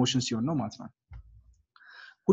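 A man's voice speaking for the first second, followed by a short low thump and a faint click near the end.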